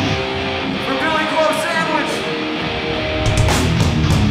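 Live hardcore band with distorted electric guitar; the drums and low end drop back at first, leaving the guitar ringing, then cymbal crashes and the full band come back in a little after three seconds in.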